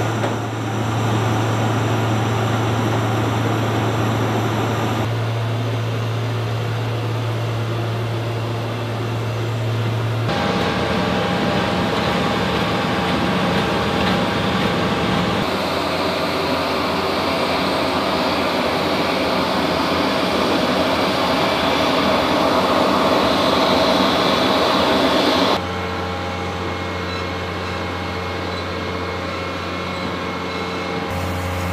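Steady drone of parked-aircraft and cargo-loading machinery on a C-17 flightline, with a low hum underneath. The noise shifts abruptly several times, about five, ten, fifteen and twenty-five seconds in.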